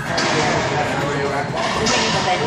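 Racquetball rally: sharp smacks of the ball off racquet and walls, one just after the start and another near the end, over a steady background of crowd chatter.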